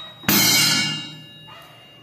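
Drum-kit cymbal struck once with a wooden stick and then choked by hand, so its ringing dies away within about a second instead of sustaining.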